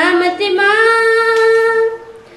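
A young girl singing solo into a microphone with no accompaniment, starting a phrase and then holding one long steady note that ends just before the close.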